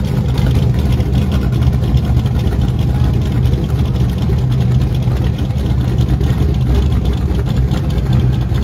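Drag race car engines idling loudly at the starting line, a steady low rumble that holds even throughout with no revving.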